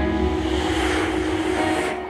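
Live rock band music: a sustained droning chord with a wash of noise that swells up and cuts off suddenly near the end.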